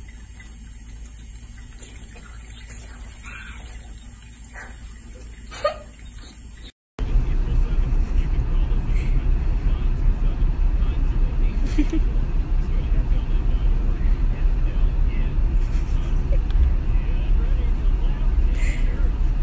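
Quiet for the first few seconds. Then, after a sudden break, a car's steady low road and engine rumble, heard from inside the cabin, is the loudest sound to the end.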